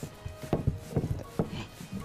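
A rolling pin rolling out a thin sheet of feteer dough on a tabletop, giving a handful of irregular knocks and thumps as it is pressed and worked toward the edges.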